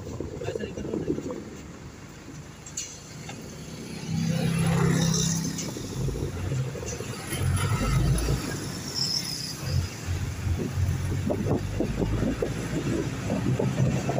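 Engine and road noise of a moving vehicle heard from on board: a continuous low rumble that grows louder about four seconds in, with a steady low drone for a second or so there.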